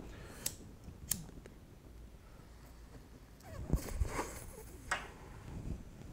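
A few short sharp clicks from a hand-held lighter being flicked to light a pipe: two about half a second apart near the start, another near five seconds, with soft handling thumps in between.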